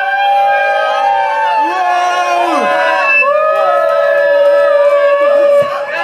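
A crowd of voices singing and shouting together, many overlapping and gliding in pitch, over a steady held tone underneath.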